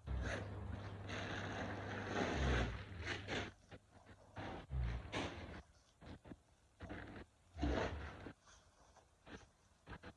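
A canvas-and-leather handbag being handled: rubbing and rustling for the first few seconds, then scattered short scrapes, with a few dull bumps.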